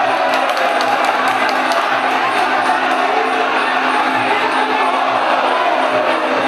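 Traditional Muay Thai fight music, the sarama band's oboe, drums and small cymbals, playing steadily over a loud, cheering stadium crowd. A few sharp cymbal-like clicks sound in the first couple of seconds.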